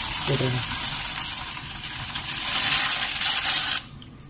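Dry macaroni poured into a stainless steel pot of boiling water: a steady hiss of the boil with the pasta pieces clattering in, cutting off suddenly near the end.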